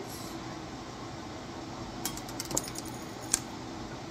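Small gold beads clicking and clinking as they are handled: a quick flurry of clicks about two seconds in and a single sharp click near the end.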